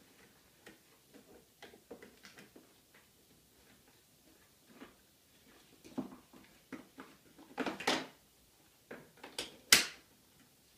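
Scattered clicks, knocks and rustles of hands working the plastic parts and fabric seat pad of a Clek Foonf car seat, with a longer rustling clatter about eight seconds in and a sharp click just before the end.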